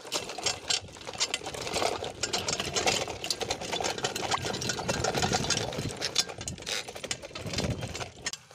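Mountain bike clattering and rattling as it rolls over a rough dirt trail, with a dense stream of rapid clicks and knocks from the bike jolting on the ground.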